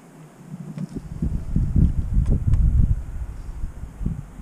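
Gusty wind buffeting the microphone: a low, uneven rumble that builds about a second in, with a few faint sharp ticks over it.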